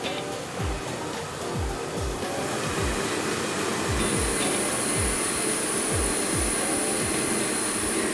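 Air-mix lottery draw machine's blower running with a steady rushing sound as it tosses the numbered balls around the clear drum. Under it is background music with a low bass thud about twice a second. A high thin whine joins about halfway through.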